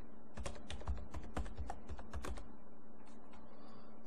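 Computer keyboard being typed on: a quick run of about ten keystrokes over roughly two seconds as a word is entered, followed by a few fainter clicks.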